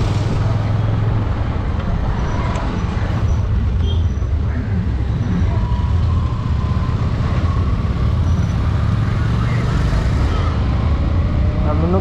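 Motorcycle engine running while riding through traffic, a steady low drone whose pitch shifts a few times with the throttle, with road and traffic noise around it.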